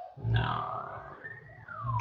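An emergency vehicle's siren wailing in the background: one slow sweep rising to a high pitch and falling again. A brief low noise comes about a third of a second in.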